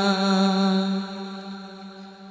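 A single voice holding one long sung note at the end of a line of a Bangla Islamic gojol, steady at first and then fading away over the second second.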